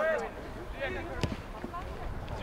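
Distant voices calling out across a soccer field, with a single sharp thud of a soccer ball being kicked about a second in.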